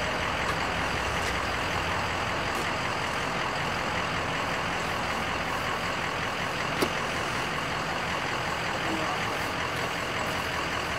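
Steady hiss and rumble of outdoor background noise, like a vehicle engine running nearby, with a single sharp click about seven seconds in.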